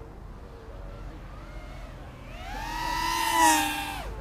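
A racing quadcopter flying close past, its brushless motors and propellers whining in a stack of pitched tones that swells from about halfway through, peaks near the end and then falls away.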